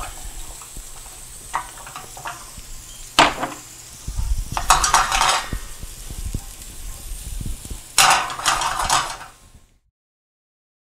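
Corn, red pepper and garlic sautéing in olive oil in a stainless steel skillet on a gas burner: a steady sizzle, with louder rattling bursts about three, five and eight seconds in as the vegetables are stirred and tossed in the pan. The sound cuts off near the end.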